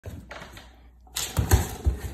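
A dog's paws thumping and claws clicking on a hardwood floor as it bounces about playfully, with three quick thumps in the second half.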